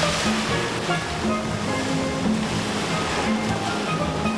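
Background music with a held bass line and melody, laid over the rushing noise of sea surf breaking on a beach.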